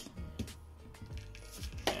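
Faint background music with a low steady hum and a few soft clicks.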